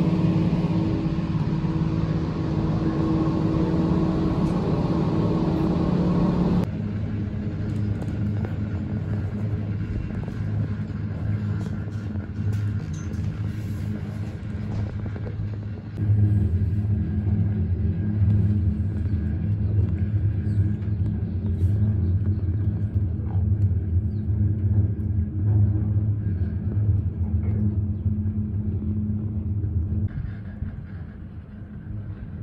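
Gondola lift machinery and cabin running: a steady mechanical hum with several pitched tones, which cuts off abruptly about seven seconds in. A lower rumble follows. About sixteen seconds in the rumble suddenly grows louder and deeper, as heard from inside the moving cabin.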